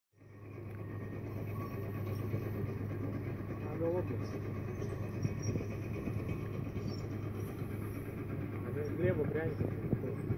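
Steady low hum of an idling vehicle engine, with faint voices briefly about four seconds in and again near the end.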